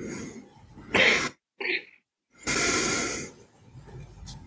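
A person's breath sounds close to a microphone over a video call: a short, sharp breath about a second in and a longer breath out about two and a half seconds in.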